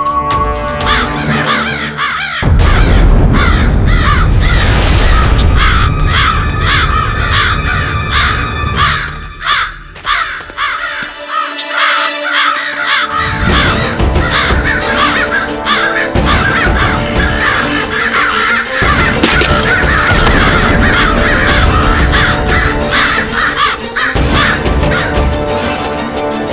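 A large flock of crows cawing together in a dense, unbroken chorus, over dramatic background music with heavy low drumming that drops out for a few seconds in the middle.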